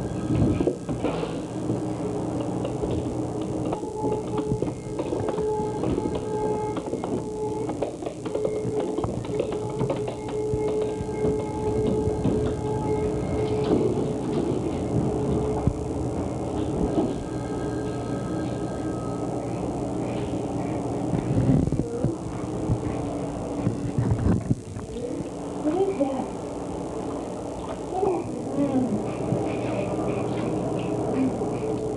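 Background music with long held notes, with a voice heard now and then.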